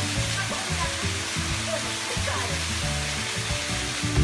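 Steady hiss of a small waterfall splashing into a pool, with quiet music underneath.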